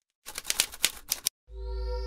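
Typewriter key-strike sound effect: a quick run of about ten sharp clicks over roughly a second. About a second and a half in, a synthesized logo sting starts, with a deep bass tone, steady held notes and a rising whistle-like glide.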